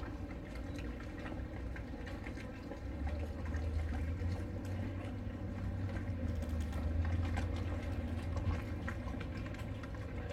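Harbour ambience: a steady low rumble that grows louder in the middle, over a faint even hiss with scattered light clicks.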